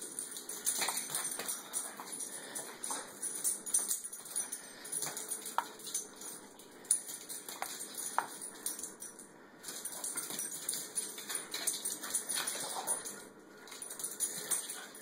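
A small dog's claws clicking and scrabbling on a tile floor in irregular flurries with short pauses, as the Boston terrier mix darts about chasing a laser dot.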